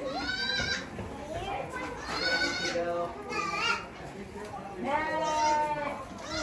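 Goats bleating in a barn, several separate wavering calls of up to about a second each.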